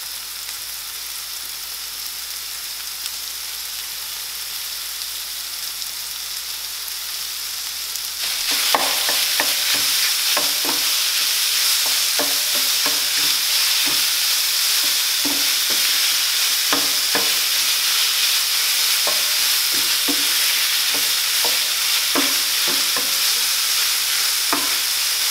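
Tofu, onions, mushrooms and bell peppers sizzling in oil in a nonstick frying pan. About eight seconds in the sizzle gets suddenly louder, and a wooden spatula stirring the scramble knocks and scrapes against the pan at irregular intervals.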